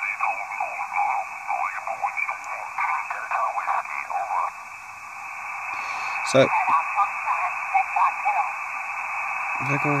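Single-sideband amateur voice transmissions from the QO-100 satellite's narrowband transponder, demodulated by an RTL-SDR and heard as thin, narrow-band radio speech over a steady hiss. Midway the voices give way to hiss for a moment, then more radio speech comes back in.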